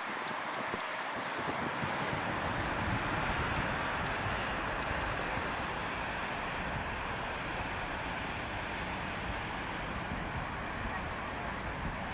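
Steady traffic noise from a busy multi-lane city street: a continuous wash of cars, buses and trams with no single vehicle standing out.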